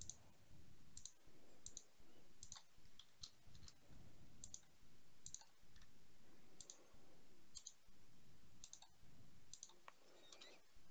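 Faint clicks of a computer mouse and keyboard, about one or two a second, many as a quick double tick, over a low background hum.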